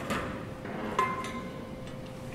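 Handling knocks from stream-sampling gear as a pitcher and swing-sampler pole are picked up: a light click, then a sharper knock about a second in that rings briefly, like metal being struck.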